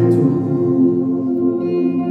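Music from a worship band's keyboard: soft, sustained pad-like chords over a low held note, with no singing. Higher notes join the chord near the end.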